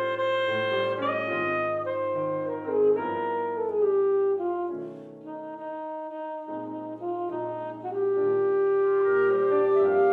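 Alto saxophone playing a jazz melody over grand piano chords, sliding between notes in a falling phrase a few seconds in. After a brief quieter stretch in the middle, the saxophone ends on a long held note.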